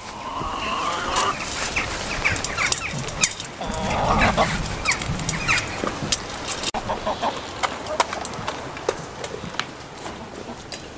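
Chickens clucking in runs of short repeated notes, mostly in the first half, over scattered sharp clicks and rustling.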